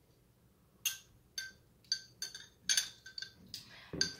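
A metal spoon and a metal drinking straw clinking lightly against glass tumblers. About eight quick clinks, each with a short bright ring, start about a second in.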